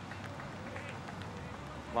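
Steady low outdoor background noise of a soccer match, with faint, distant voices from the field.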